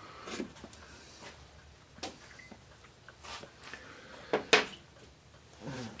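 A few scattered light knocks and clicks of things being handled on a workbench, the sharpest two a little past four seconds in.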